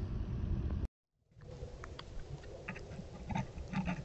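Low outdoor rumble on a phone microphone that cuts off about a second in. After a brief silence comes a trail camera's faint background, with short clicks and soft snuffling sounds from an animal nosing right at the camera, more of them towards the end.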